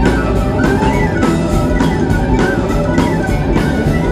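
Celtic folk-rock band playing live, an instrumental passage of electric guitar and a steady drum-kit beat under a violin melody.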